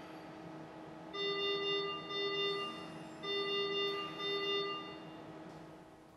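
Ohmeda Engström Carestation ventilator alarm sounding two pairs of pitched beeps, one pair about a second in and another about two seconds later. It signals low oxygen supply pressure and low FiO2.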